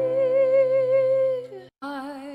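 A woman's singing voice holding one long note with vibrato over a steady accompaniment chord, closing a cover song. About a second and a half in it stops, there is a brief dead silence, and a new song begins.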